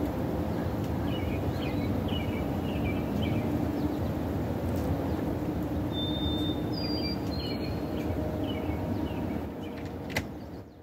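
Outdoor ambience: small birds chirping in short bursts, with a couple of thin whistled notes about six seconds in, over a steady low rumble. The rumble fades near the end.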